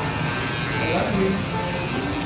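Corded electric hair clippers buzzing steadily while cutting a child's hair, with voices faint underneath.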